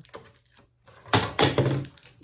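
Objects handled and set down on a tabletop: a few faint clicks, then a loud short cluster of knocks and rattles a little past a second in, as a plastic squeeze bottle is taken out of a tin truck basket and laid on the table.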